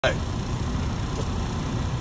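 Steady low rumble of a truck's engine heard inside the cab, after a short sharp sound at the very start.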